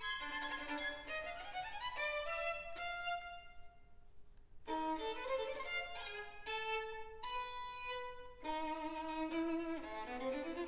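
Solo violin playing unaccompanied. It opens with fast running passages that climb in a rising scale, lets a held note fade out midway, then after a short pause plays sustained notes two or more at a time.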